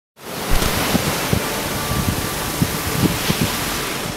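Beach ambience: a steady rush of ocean surf and wind, fading in at the start, with irregular low thumps of wind buffeting the microphone.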